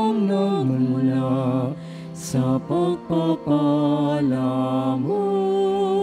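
Offertory hymn being sung at Mass, a slow melody of long held notes, with a short break about two seconds in.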